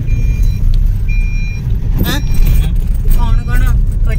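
Car cabin noise while driving: a steady low rumble from the moving car. Two short high beeps sound about half a second apart near the start, and brief voices come in around the middle and near the end.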